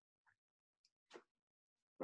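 Near silence, with one faint click a little after a second in.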